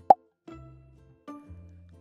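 A short, sharp cartoon pop sound effect right at the start, the last of a quick run of pops, marking the paper squares vanishing in stop-motion. After it comes soft background music with steady low notes.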